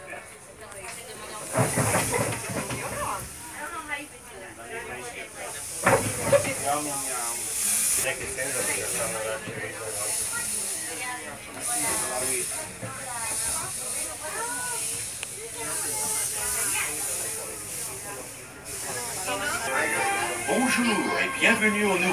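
Small steam locomotive running, its steam hiss swelling and fading in repeated pulses, with two louder bursts about 2 and 6 seconds in.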